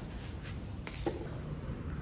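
Faint room noise with one light, short click about a second in.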